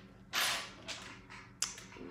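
Sewing needles being handled and sorted: a short rustling hiss, then a small click and a sharp click near the end.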